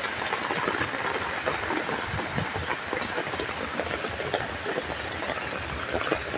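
Heavy rain falling steadily: a dense, even hiss with scattered small taps of drops.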